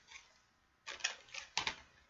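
Plastic Blu-ray case being handled and opened: a few light plastic clicks and rattles, the clearest about a second in and again just past a second and a half.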